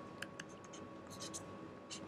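Stylus writing on a tablet: a few faint, short scratches and taps as the pen moves across the screen.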